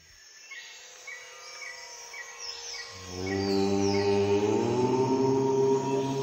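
Faint outdoor ambience of short high chirps repeating about twice a second, then, about three seconds in, a low chanted "Om" drone comes in, swelling and held steady.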